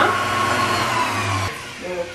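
Stand mixer motor running at high speed with its wire whisk beating eggs and sugar into a foam for sponge cake, then switched off suddenly about a second and a half in.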